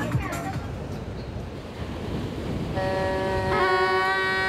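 Voices trail off into an even wash of outdoor noise. About three seconds in, a reed pipe abruptly starts holding one steady note, wavering slightly in pitch.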